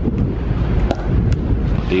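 Wind buffeting the microphone, with a few sharp pops of pickleball paddles striking the ball.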